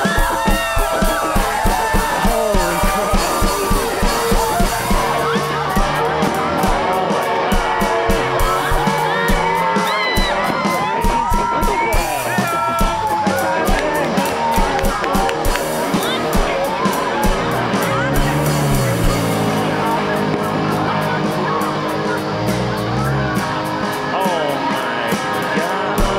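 Experimental instrumental rock played on a Fender electric guitar and an electronic drum kit, with a steady kick-drum beat and sliding guitar lines; a low bass line comes in about five seconds in.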